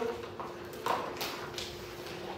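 A pause in speech holding a few faint, light taps spread through it, over a steady low hum.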